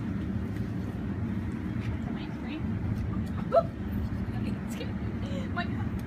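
Steady low outdoor rumble, as from road traffic, with faint scattered clicks. One short, sharp, rising cry stands out about three and a half seconds in.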